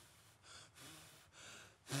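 A man blowing at a birthday-cake candle in three short, faint puffs of breath.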